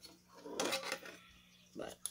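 Light clicks and rattles of a graphics card and its cooler being handled and fitted together while the screws are lined up, with a cluster of small knocks about half a second to a second in.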